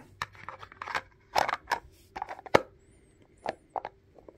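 Hard plastic toy-wheel parts being handled and fitted together: a brown plastic hub cap set against the wheel, giving a series of light clicks and knocks, the sharpest about two and a half seconds in.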